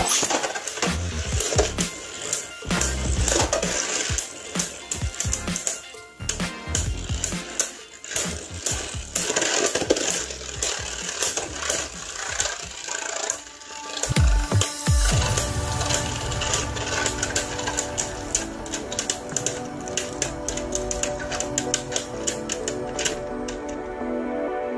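Two Beyblade Burst spinning tops launched into a plastic stadium and battling. There are rapid, irregular clacking hits as the tops strike each other and the stadium wall. The hits keep coming until the tops come to rest near the end.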